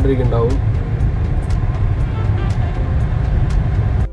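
Steady low rumble of a car's engine and tyres heard from inside the cabin while driving in slow traffic. A voice sounds briefly at the start.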